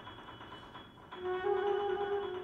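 Concert flute playing a low held note that enters about a second in and steps up slightly in pitch.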